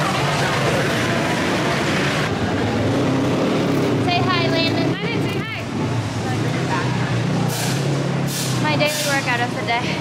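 Steady drone of dirt bike engines running, with indistinct talking over it from about four seconds in.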